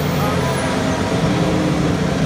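Formula 1 cars' turbocharged V6 engines running at low revs as the cars roll slowly along the starting grid: a steady, loud drone of several overlapping engine notes.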